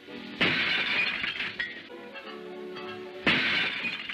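Window glass smashing twice, about three seconds apart, as thrown objects break it, with sharp crashes and a ringing tail each time, over background music.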